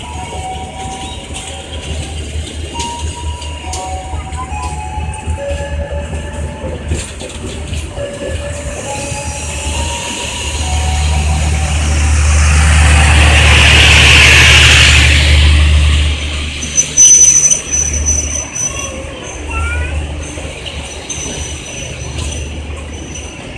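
KA Pasundan's K3 economy passenger coaches rolling slowly past while leaving the station: a steady low rumble of steel wheels on rail with short wheel squeals early on. The sound swells into a louder rush about midway, then a few sharp clanks follow.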